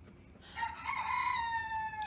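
A rooster crowing: one long call that starts about half a second in and slowly falls in pitch.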